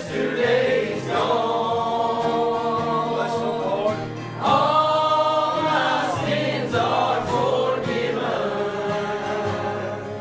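Gospel song sung by a group of voices over acoustic guitars and a steady bass line, in long held notes; the music dips briefly a little past the middle before a new phrase starts.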